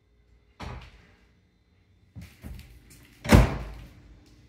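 Over-the-range microwave door being swung shut: a thump just over half a second in, a few lighter knocks around two seconds, and the loudest bang about three and a half seconds in.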